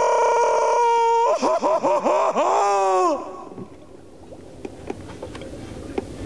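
A loud, edited vocal sound: one held note for about a second, then a run of quick wobbling swoops in pitch. It cuts off suddenly about three seconds in, leaving only a faint hiss.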